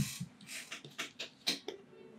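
A thin plastic water bottle being picked up and handled: a brief thump at the start, then a scatter of short crinkles and clicks from the flexing plastic.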